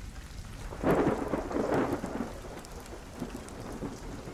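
Steady rain with a roll of thunder that swells about a second in and dies away over the next second or so.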